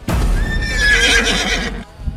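A horse whinnying as a loud sound effect, with a wavering, slightly falling cry lasting about a second and a half. It starts and cuts off abruptly.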